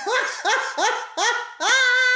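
A woman laughing out loud: a run of about five short rising bursts of voice, the last one drawn out.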